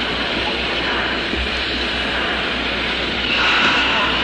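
Steam locomotive running, a steady rushing, hissing noise that swells briefly near the end.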